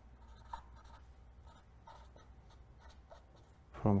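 A pen writing on paper in faint, short scratching strokes.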